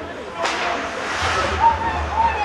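Ice-rink sound: a sudden hiss of hockey skate blades scraping the ice about half a second in, lasting about a second, with voices shouting in the arena behind it.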